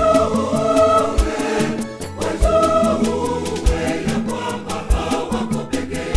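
Mixed-voice church choir singing a gospel song over a backing band, with a steady beat and a low drum hit about every second and a quarter.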